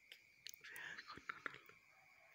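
Quiet, soft whispering with a few small clicks through the middle, over a faint steady high-pitched tone.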